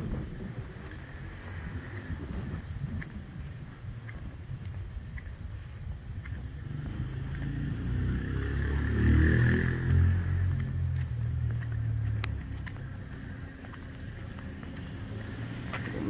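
Low rumble of a car engine, growing louder and steadier for several seconds in the middle, under wind buffeting the microphone.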